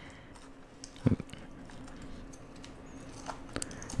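A plastic spoon scooping wet seeds and pulp out of a halved melon: soft wet scraping and squishing, with one sharper click about a second in and a few small ticks near the end.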